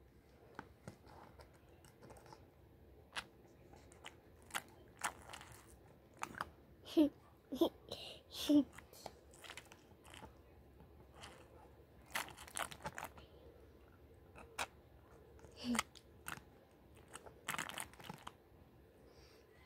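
Plastic snuffer bottle being squeezed and released at the water's surface in a plastic gold pan, sucking up gold flakes: faint scattered crinkling and clicking. A short laugh comes about seven seconds in.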